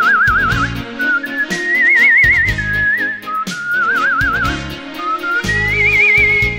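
A person whistling a slow, sentimental melody with a wide, even vibrato on the held notes, over an instrumental backing of bass and light percussion. The tune climbs to its highest note near the end.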